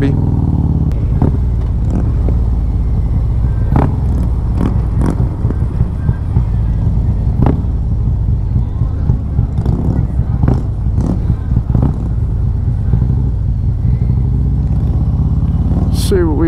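Harley-Davidson Road Glide V-twin with a Stage II build (S&S 475 cam, Reinhart headers and 4-inch slip-on mufflers) running at low riding speed, a steady deep exhaust note with a few short sharp cracks scattered through it.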